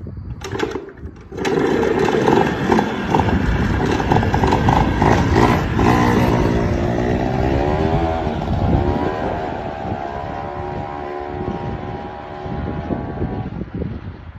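Small scooter-type engine on a homemade motorized wheelbarrow, starting after a couple of clicks and catching about a second and a half in. It then runs and revs as the machine pulls away, its pitch rising and falling, and grows fainter as it moves off, dropping away near the end.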